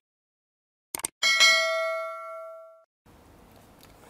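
A quick mouse-click sound followed by a bright bell 'ding' that rings out and fades over about a second and a half. It is the sound effect of a subscribe-button and notification-bell animation.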